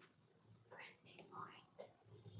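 Near silence: faint room tone with a few soft, indistinct sounds in the second half.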